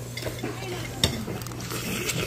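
Metal chopsticks and a ladle clinking against a stainless steel pot and bowls while noodle soup is served, with one sharp clink about a second in. A steady low hum runs underneath.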